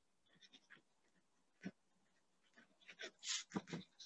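Near silence on a video call, with a faint click a little before the middle and a few faint short sounds near the end.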